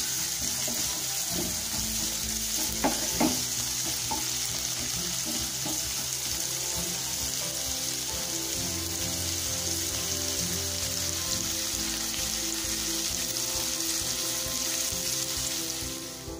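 Chopped ridge gourd sizzling steadily as it fries in oil in a nonstick pan. There are two short knocks about three seconds in.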